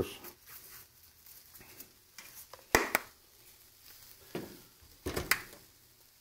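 Seasoning shaker jars being handled over the stove: a few sharp clicks and taps, the loudest a close pair about three seconds in, then a few lighter ones near the end, with quiet between.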